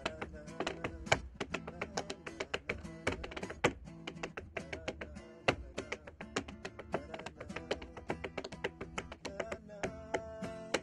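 Tap shoes striking a small portable tap board in quick, uneven rhythms, to an acoustic guitar accompaniment.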